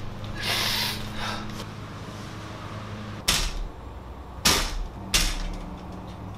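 Bicycle rear wheel and steel frame clunking as the wheel is yanked hard against too-tight rear dropouts (115 mm spacing instead of 120 mm), so the wheel will not come out. Three sharp metallic knocks come in the second half, after a brief scuffing hiss near the start.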